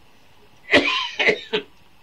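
A man coughing and clearing his throat: one loud cough about three quarters of a second in, then two shorter ones.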